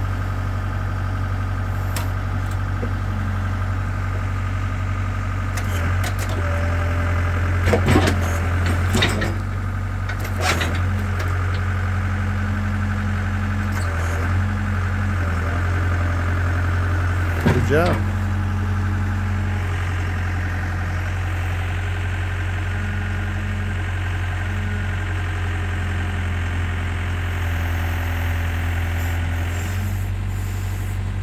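Komatsu WB-150AWS backhoe's diesel engine running steadily as the hydraulic thumb and bucket grip and swing a log. The note rises under hydraulic load a few times, once in a short rising whine, with several sharp knocks about eight to ten seconds in and again a little past the middle.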